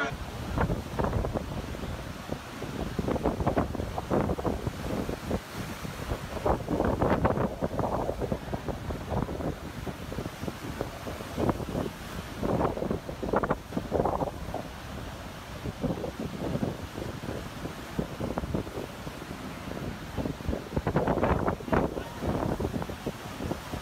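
Heavy surf breaking and washing in, with wind buffeting the microphone in a steady low rumble; the noise swells and falls with each gust and breaking wave.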